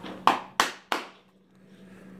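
Three sharp hand slaps in quick succession, about a third of a second apart.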